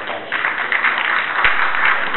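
Audience applauding, the clapping starting about a third of a second in and holding steady.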